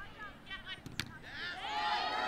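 A soccer ball kicked once, a sharp thud about halfway through, with high-pitched voices shouting on the field before and after it.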